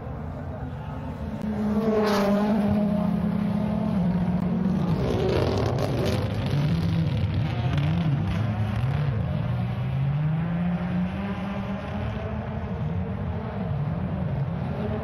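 Rally car engine running hard, its note held steady and then climbing and dropping several times in quick succession as it revs and changes gear. There is a sharp crack about two seconds in.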